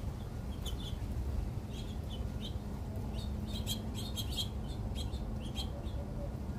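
Small songbirds chirping in short, sharp notes, scattered at first, then a quick run of chirps about three to four and a half seconds in, over a steady low rumble.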